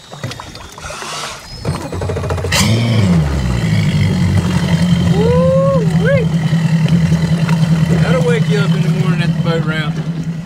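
Mercury Verado 300 V8 outboard idling, switched from its quiet mode to sport exhaust mode. About two to three seconds in the engine note bumps up and becomes much louder, then holds a steady idle.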